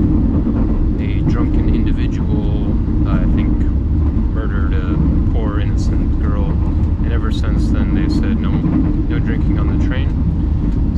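Steady low rumble inside a passenger train carriage, with people talking in the background.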